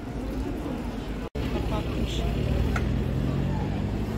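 Busy city street ambience with passers-by talking in the crowd. It drops out abruptly for an instant just over a second in. After that a low, steady engine hum joins it.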